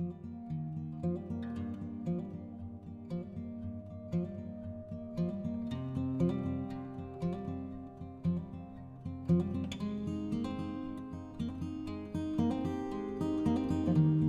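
Background music played on acoustic guitar, with plucked and strummed notes in a steady rhythm.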